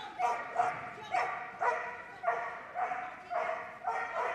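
A border collie barking over and over in excitement as he runs, about two sharp barks a second.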